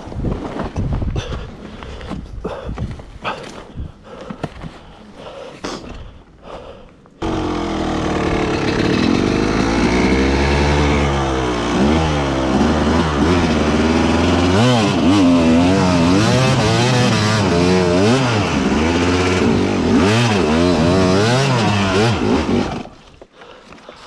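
Scuffs and clicks in dry leaves for the first few seconds, then an enduro dirt bike's engine starts abruptly about seven seconds in and is revved up and down over and over, before cutting out suddenly about a second before the end.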